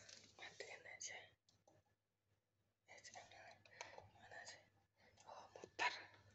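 Quiet whispering, broken by a pause of about a second and a half in the middle, with a sharp click near the end.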